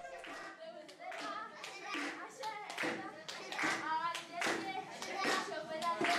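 Children clapping in rhythm, about two claps a second, while singing a traditional Ashenda song in high voices.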